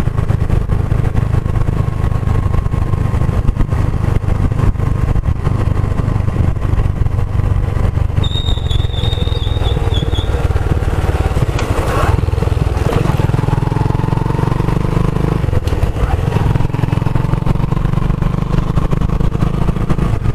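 Scooter riding along at steady speed, a continuous low rumble of wind and road noise on the camera. A short high whistle sounds about eight seconds in, and there is a single sharp click a couple of seconds later.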